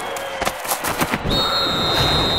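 Sound effects for an animated logo. A quick run of sharp cracks comes in the first second or so, then a steady high-pitched tone starts a little over a second in and is held.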